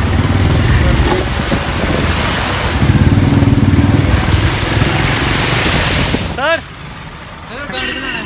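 Motorcycle moving through a flooded street: engine running under heavy wind rush on the microphone, with water churning from the wheels. The noise cuts off suddenly near the end, and voices follow.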